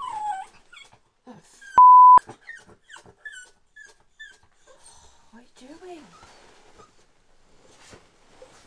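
A small dog whimpering and whining in short high-pitched glides, with a person's voice, cut across about two seconds in by a loud, steady censor bleep lasting under half a second, the loudest sound.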